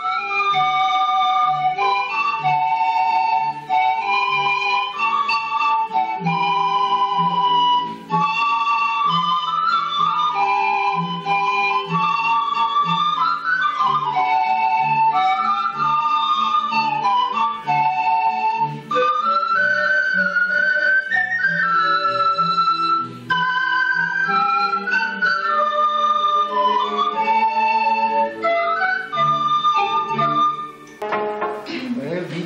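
Pan flutes played together as an ensemble: a melody of held, breathy notes moving step by step, over a lower accompaniment part in a steady rhythm.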